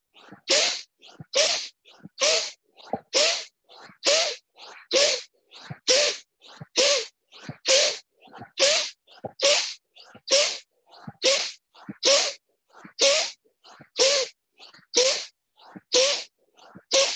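Rhythmic forceful yoga breathing: a sharp, loud exhalation through the nose about once a second, each followed by a quicker, softer inhalation, in the pattern of a bellows-breath pranayama.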